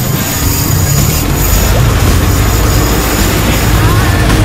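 Boat engine running steadily, with a low rumble and an even hiss of wind and water.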